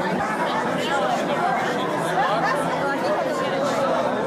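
Many people talking at once: steady, overlapping chatter of a gathering, with no single voice standing out.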